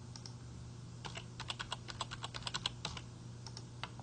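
Typing on a computer keyboard: a quick run of keystrokes through the middle as a password is entered, with a few separate clicks before and after, over a steady low hum.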